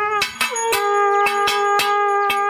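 Dramatic television-serial background score: sustained, bell-like chord tones, with the chord changing about half a second in, over rapid, evenly spaced percussion hits, about five a second.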